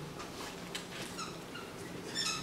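Dry-erase marker scratching and squeaking on a whiteboard during writing, with a run of short high squeaks a little after a second in.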